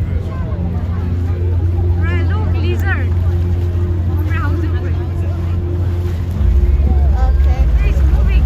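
Boat engine running with a steady low drone and a few held tones above it, rising a little in level about six seconds in, with scattered voices of people talking behind it.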